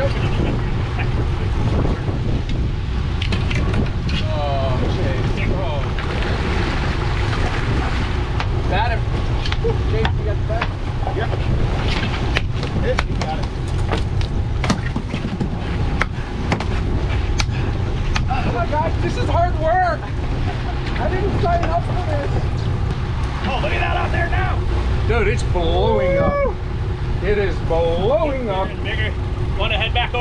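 Fishing boat's engine running with a steady low rumble, with scattered sharp clicks and knocks from the deck and tackle.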